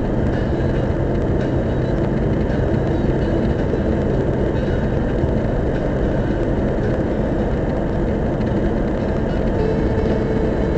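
Steady road noise of a car at expressway speed inside a tunnel, heard from inside the cabin: an even, mostly low rush of tyres and engine with a faint steady hum.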